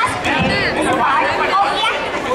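Speech amplified through a stage loudspeaker system, with crowd chatter.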